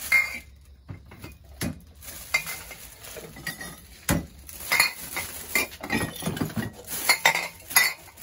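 Glass bottles and jars clinking and knocking together as they are handled and gathered into a plastic bag for bottle recycling: a string of irregular short clinks.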